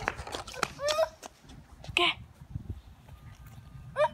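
A few brief, indistinct voice sounds, short calls or exclamations, over a low rumble of handling noise from the phone being moved.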